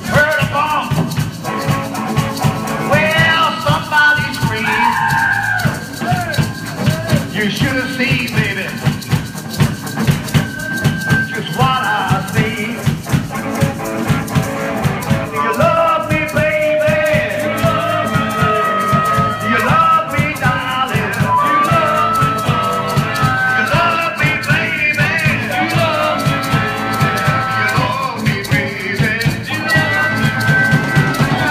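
Live rhythm-and-blues band playing loudly: a steady drum beat, electric guitar, maracas shaken by the singer, and harmonica lines with bent, wavering held notes.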